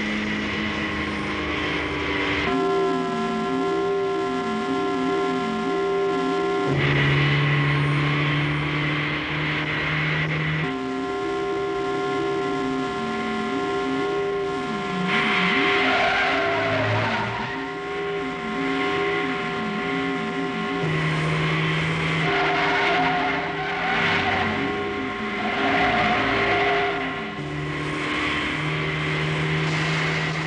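Engines of the chase vehicles running steadily at speed, with stretches of tyre squeal. The pitch of the engine drone changes at each cut between vehicles.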